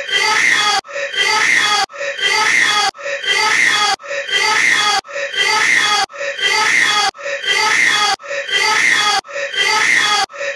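A short crying sound clip, put in as Bulma crying, looped over and over about once a second with a brief gap between repeats.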